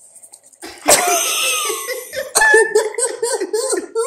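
A sudden sharp cough-like vocal outburst about a second in, followed by laughter in short, rapid bursts.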